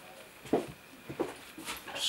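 A few short knocks and squeaks of footsteps on a creaky floor, the loudest about half a second in, as a person walks up in a quiet small room.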